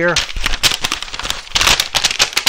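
A large tarp being pulled out, crinkling and crackling loudly in a dense, irregular run.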